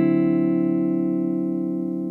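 Single electric guitar chord from a Gibson ES semi-hollow guitar, played through a BECOS CompIQ MINI analog compressor pedal. The chord rings out with long, even sustain and fades slowly.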